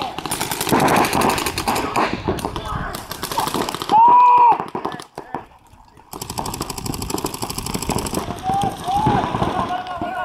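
Paintball markers firing long, rapid strings of shots in three bursts, with players shouting across the field. A loud yell comes about four seconds in, between the bursts.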